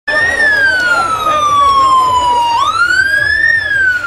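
Emergency-vehicle siren in a slow wail: a loud tone that falls for about two and a half seconds, rises again in about a second, then starts to fall once more. Crowd voices sound underneath.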